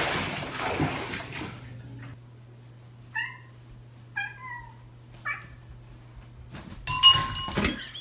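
Water rushing in a bathtub for the first two seconds, then a cat meows three times, about a second apart, over a low steady hum. A loud, brief burst of sound follows near the end.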